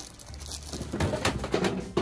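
Plastic wrapper crinkling as a large cookie is unwrapped by hand, a dense run of crackles that starts about a third of the way in and grows louder.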